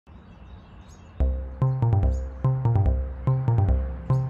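Faint outdoor ambience with a few bird chirps, then about a second in a GarageBand-made hip-hop backing beat starts. It is a repeating phrase of short pitched notes over a deep bass.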